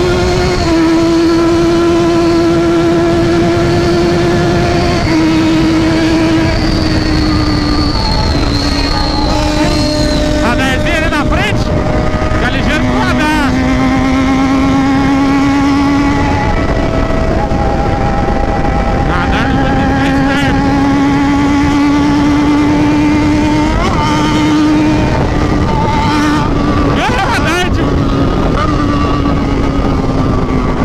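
Yamaha XJ6's 600 cc inline-four engine pulling at high revs at speed: a loud, steady high engine note that steps down in pitch at each gear change and then climbs slowly again, over heavy wind rush.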